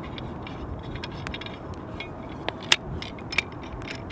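Light clicks and clinks of a compact survival shovel's handle sections being handled and fitted together, scattered irregularly with the sharpest click a little before three seconds in, over a steady background hiss.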